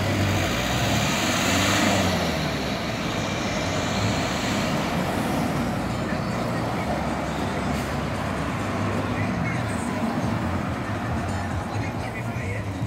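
Road traffic: cars and light trucks driving past close by, a steady run of engine and tyre noise, loudest as a vehicle passes in the first two seconds.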